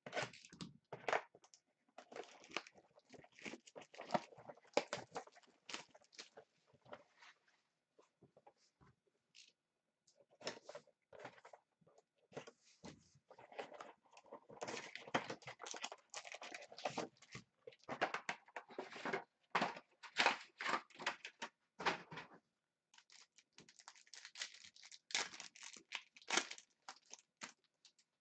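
Plastic shrink wrap cut and peeled off a box of trading cards, then the cardboard box opened and the foil card packs torn open, in irregular bursts of crinkling, tearing and rustling.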